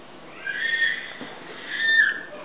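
Two high-pitched squealing vocal noises from a man: the first about half a second in, the second louder near the end.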